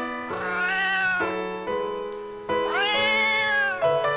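A cat meowing twice, each meow about a second long, rising and then falling in pitch, over piano music.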